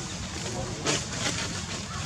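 Outdoor background: a steady low rumble with faint human voices, and one sharp click a little under a second in.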